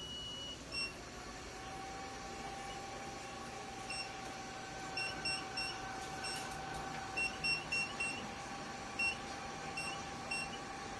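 Touchscreen of a 980 nm diode laser machine beeping at each button press: short high beeps, some single and some in quick runs of three or four. Under the beeps is a steady hum, which rises to a constant pitch over the first second and a half.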